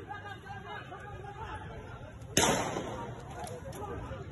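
A single sharp gunshot crack from a police warning shot, a little over two seconds in, with a short echo tail. Voices of the crowd and officers chatter underneath.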